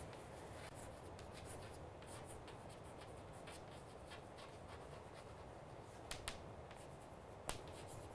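Chalk writing on a chalkboard: faint scratching strokes, with a few sharper ticks of the chalk against the board near the end.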